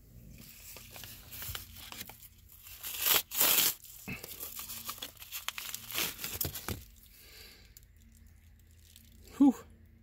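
A paper mailer envelope being torn open by hand: irregular rips and crinkling paper, with the loudest tear about three seconds in, settling into lighter rustling. A short voice sound comes near the end.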